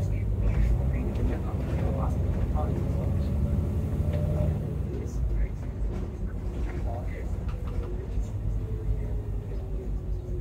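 Volvo B9TL double-decker bus under way, heard from the upper deck: a steady low rumble of engine and road noise that eases a little about halfway through, with a faint whine sliding slowly down in pitch.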